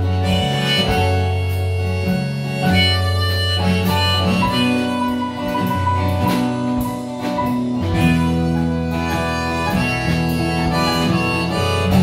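A small band playing an instrumental passage of a folk-pop song: acoustic guitars, drums and keyboard, with a lead melody of long held notes over a steady bass line.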